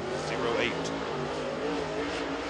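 Dirt late model race car's V8 engine running at speed through a qualifying lap on the clay oval, a steady engine note that wavers slightly in pitch.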